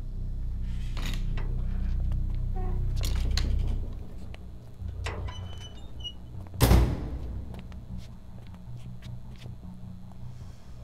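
A low rumbling drone that swells for about four seconds and then drops away, followed by faint knocks and then one loud, sharp thud about six and a half seconds in.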